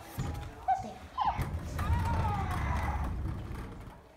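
Low rumble of a child's Nerf ride-on toy car driving across a hardwood floor, fading near the end, with a few short high voice-like sounds over it.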